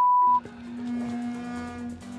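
A short, loud censor bleep: one steady pure tone, about half a second long, with all other sound cut out beneath it, blanking a spoken word. After it, background music holds one steady low note with overtones.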